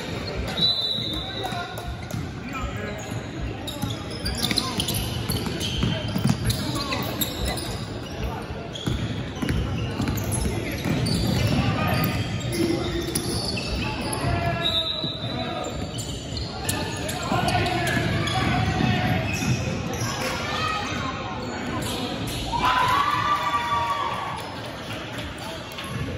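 Basketball bouncing on a hardwood gym court during play, with repeated ball thuds, players' voices calling out and a couple of brief high squeaks, all echoing in a large gym.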